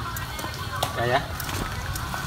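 A short spoken word over outdoor background noise with a steady low hum; otherwise only speech.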